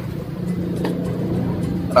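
A steady low mechanical hum, with a faint tap about a second in.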